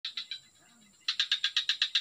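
A frog calling in short, even pulses: a few at first, then a steady run of about eight a second from about a second in.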